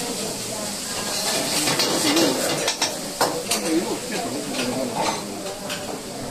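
Food sizzling in a wok on a commercial burner while a metal ladle stirs it, with scattered short metallic knocks of the ladle against the pan.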